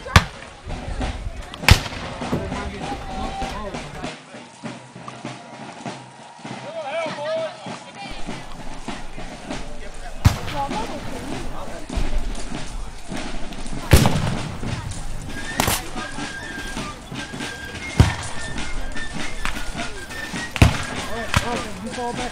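Black-powder gunfire from reenactors: about seven single sharp shots spaced irregularly a few seconds apart, two of them in the first two seconds.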